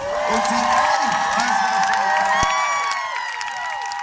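Large concert crowd cheering, with many high-pitched screams and whoops overlapping, easing off slightly near the end.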